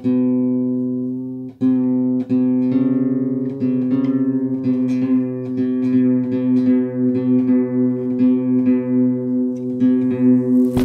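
Plucked-string music holding one low note. It is struck a few separate times in the first two seconds, then picked rapidly and evenly from about three seconds on.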